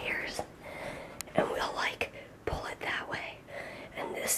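Hushed whispered talk, breathy and without full voice, with a brief sharp click about a second in.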